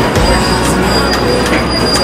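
Subway train in a station: a loud rumble with a steady high-pitched wheel squeal running over it.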